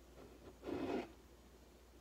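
A short, soft scrape lasting under half a second, about two-thirds of a second in: a ceramic coffee mug being moved on the countertop.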